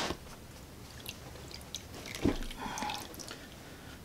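Water dripping and trickling off a wet rabbit's soaked fur into a plastic tub as it is held up to drain, with small handling clicks and one dull thump about two seconds in.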